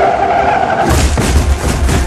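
Action-film sound mix: a sustained high squeal like skidding tyres that ends about a second in, followed by heavy low rumbling and sharp hits under music.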